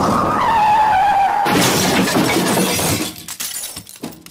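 Edited-in transition sound effect: a falling tone, then a crash like shattering glass that fades away near the end.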